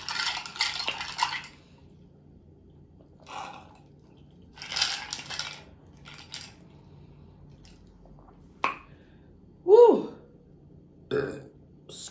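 A short, loud burp about ten seconds in, its pitch rising and then falling. Before it there are a few brief bursts of ice rattling in a glass as a straw stirs it.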